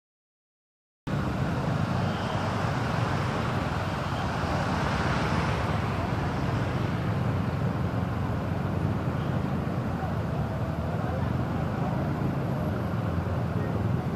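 Silence for about the first second, then steady vehicle and traffic noise, a low engine rumble with road and water noise, from moving along a flooded street.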